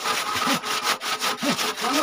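Hand saw cutting through a wooden plank in steady, rapid back-and-forth strokes.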